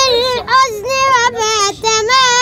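A boy singing an Arabic song unaccompanied, in short phrases of held, wavering, ornamented notes.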